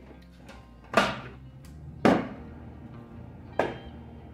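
Three sharp plastic knocks, about a second or so apart, as the clear plastic lid of a food processor is lifted off its bowl and set down on a wooden countertop.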